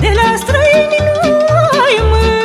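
Romanian folk music with band accompaniment: a long-held melody line with vibrato and turns over a steady bass beat of about two pulses a second.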